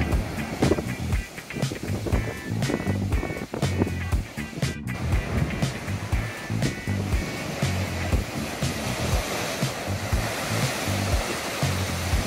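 Ocean surf surging and crashing into a limestone blowhole chasm, heard under background music with a steady beat; the rushing water grows louder in the later part.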